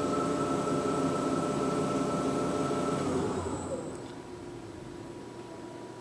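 Romi C420 CNC lathe spindle running steadily at 2,000 rpm, then spinning down from about three seconds in, its pitch falling as it slows, until only a faint hum is left.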